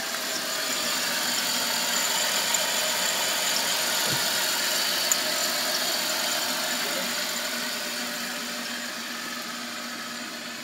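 A 2002 Dodge Caravan's engine idling steadily with the hood open.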